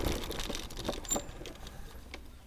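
Electric scooter rolling slowly over grass: a faint low rumble with scattered light clicks and rattles, fading away.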